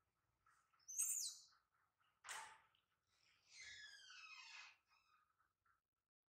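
Faint, quick bird chirps repeating about four times a second. A loud high call slides down in pitch about a second in, a sharp knock comes a little after two seconds, and a longer call with falling pitch follows near the middle.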